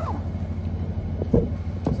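Handling knocks from a hand-held microphone with a fuzzy windscreen as it is passed between people, two of them about half a second apart in the second half. A steady low hum like an idling engine runs underneath.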